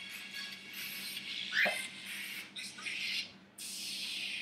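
Faint, tinny music leaking from headband headphones that are playing loudly to the wearer. There is a brief high squeak about one and a half seconds in.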